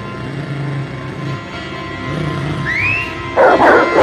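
Film score music playing, then hounds in a kennel barking loudly in repeated bursts from about three and a half seconds in, with a short high rising-and-falling whine just before.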